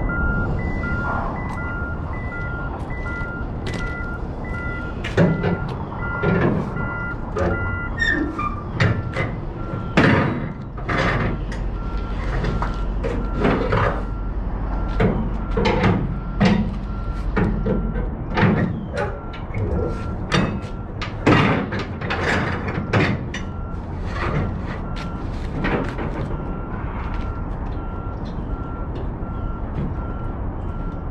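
A reversing alarm beeps steadily throughout over a truck engine's low idle, which drops away about eighteen seconds in. From about five seconds in to near the end, a series of sharp clicks and clanks as the flatbed trailer's ratchet straps are released.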